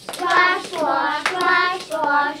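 A group of children chanting an action rhyme together, with a few hand claps in among the voices.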